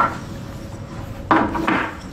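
Wooden sliding handle of a workbench vise being worked in the vise screw: a short wooden knock at the start, then wood rubbing and rattling as the handle slides through, about a second and a half in.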